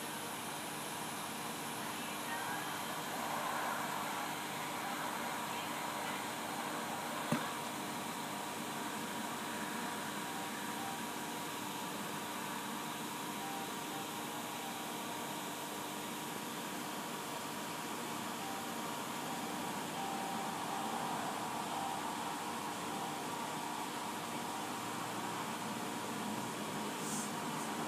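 Steady background hum and hiss with a few faint steady tones, broken by one sharp click about seven seconds in.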